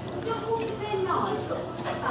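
People talking, voices that the recogniser did not write down as words.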